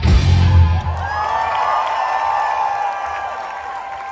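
A live rock band ends a song. The loud bass and drums stop about a second in, leaving held electric-guitar notes ringing and slowly fading, with the crowd starting to cheer.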